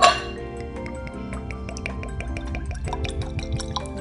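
Bourbon glugging out of a pear-shaped glass bottle into a tasting glass, a quick irregular run of gulps and drips, with background music.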